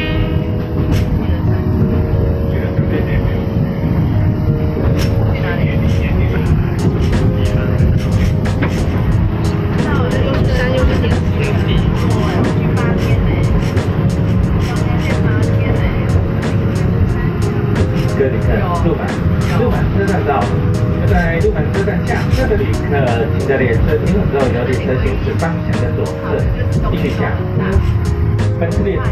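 Background music with held chords, over the steady rumble of a moving Alishan Forest Railway train.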